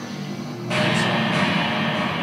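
Band music on guitar and keyboard: a low held note, joined less than a second in by a loud, steady hissing wash of sound that lasts to the end.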